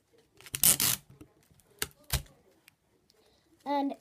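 Sellotape pulled off the roll in one short, loud rip about half a second in, followed by two sharp knocks around two seconds in.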